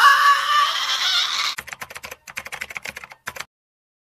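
A man's hysterical, high-pitched shrieking laugh for about a second and a half, breaking into a rapid string of short clicking gasps that cut off abruptly about three and a half seconds in.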